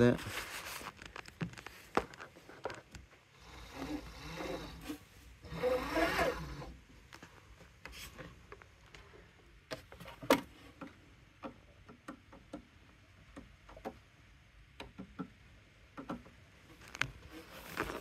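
Handling noise: scattered light clicks and rubbing, with two short, louder stretches of scraping about four and six seconds in. No motor is running.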